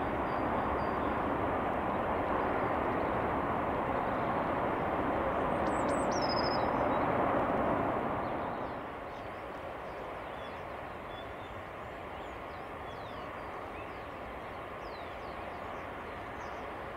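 Freight train of tank wagons rolling on the rails, a steady rumble of wheels that drops in level about eight seconds in.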